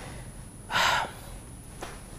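A man's single short, sharp intake of breath through the mouth, about a second in, with faint room tone around it.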